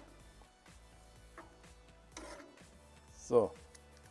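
Faint background music under soft sounds of a ladle stirring a thick goulash in a cast-iron Dutch oven, with one small click.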